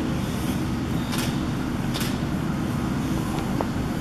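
Steady low rumbling background noise, with a couple of faint sharp clicks about a second and two seconds in.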